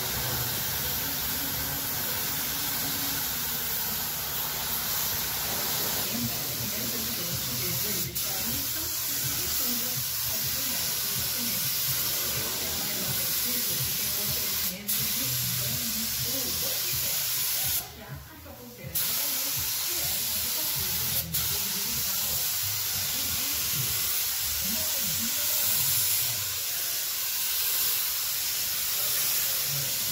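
Compressed-air gravity-feed paint spray gun hissing steadily as paint is sprayed onto a car body. The hiss is cut by a few brief breaks where the trigger is let go, one lasting about a second around two-thirds of the way through.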